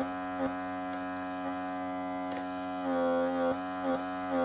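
Small electric suction pump of a handheld microdermabrasion pore-vacuum wand humming steadily as its tip is stroked over the skin of the nose. Its pitch dips and it grows louder for about a second, about three seconds in, and a few faint clicks come through.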